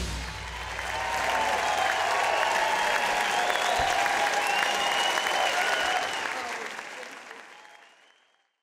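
Large audience applauding and cheering after a live rock song. The applause fades out over the last couple of seconds.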